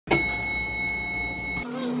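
A single bell-like chime struck once and left ringing steadily over a low hum, cut off abruptly about one and a half seconds in as music begins.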